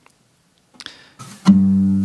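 Near silence with a few faint clicks, then a guitar chord strummed about one and a half seconds in and left ringing: the opening of the song.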